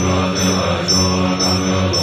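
Tibetan Buddhist chanting by monks, low and held on a steady pitch, with a thin high ring that recurs about twice a second.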